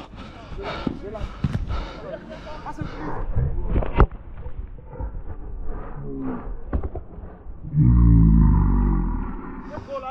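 Running footsteps and the knocks of a body-worn camera in an outdoor football game, with players' voices calling across the pitch. There is a sharp single knock about four seconds in, typical of a ball being kicked. Near the end comes a loud shout over a low rumble.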